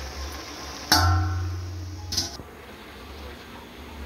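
A metal ladle knocks against a metal wok about a second in, and the wok rings with a clear tone for about a second until a second knock stops it.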